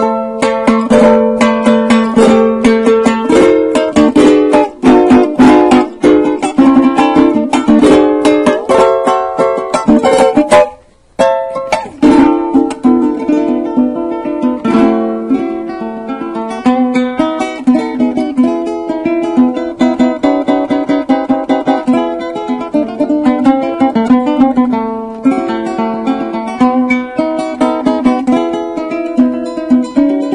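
Venezuelan cuatro with nylon strings in the traditional cambur pintón tuning, played solo in a joropo improvisation. Fast strummed chords run for about the first ten seconds, then after a brief break the playing turns lighter, with picked melody notes.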